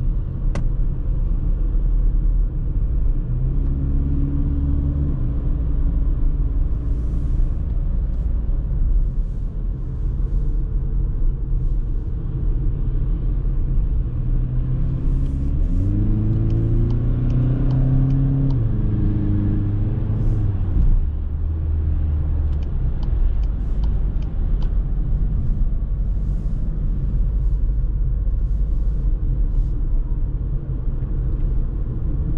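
Inside the cabin of a 2021 VW Passat 2.0 TDI 122 hp: a steady low rumble of road and tyre noise with the four-cylinder diesel running under it. The engine note comes up briefly a few seconds in. About halfway through it rises and holds for several seconds, then drops away.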